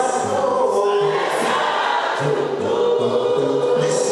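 Gospel choir singing in harmony.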